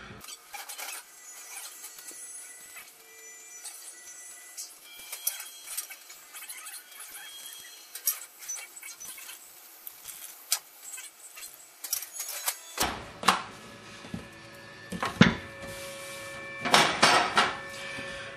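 Scattered clinks and knocks of glass baking dishes being handled and tipped to drain grease into a plastic bowl, with faint background music under them; the knocks get fuller and louder about two thirds of the way in.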